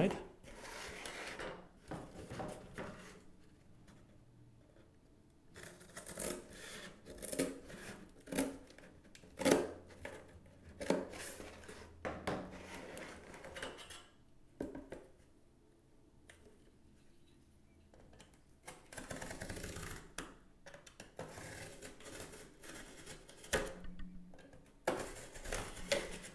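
Handling of a cardboard box and a steel ruler: intermittent knocks, taps and scrapes as the box is turned and set down and the ruler is laid in place, then a box knife scoring through the cardboard along the ruler.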